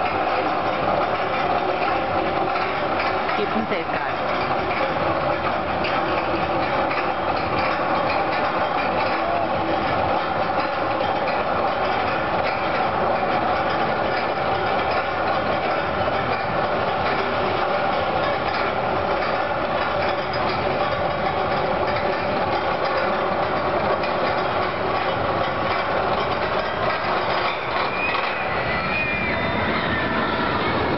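Steady amusement-park din: indistinct background voices over a constant mechanical hum, running unbroken at an even level.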